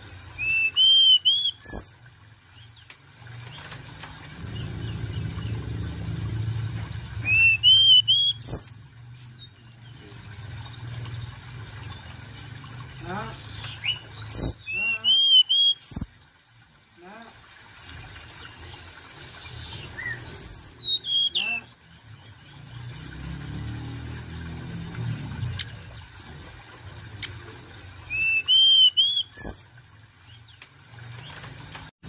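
Hill blue flycatcher singing: five short phrases a few seconds apart, each a quick rising warble that ends in a steep, high whistled sweep.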